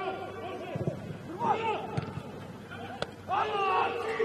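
Men's voices shouting and calling across a football pitch during a set piece, with one sharp knock about three seconds in.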